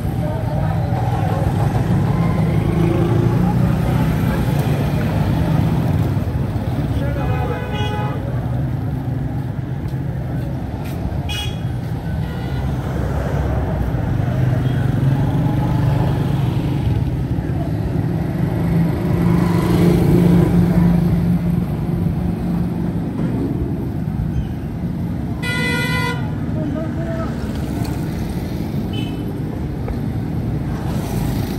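Busy street traffic: motorcycles and motor rickshaws running past in a steady rumble, with short horn toots a few times, the loudest late on.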